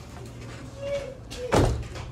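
A door shutting with a single loud thump about one and a half seconds in.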